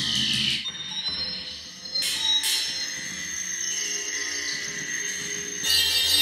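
Improvised electronic music from synthesizers: steady high, whistle-like tones hold through, with two sharp hits about two seconds in and several falling pitch glides near the end.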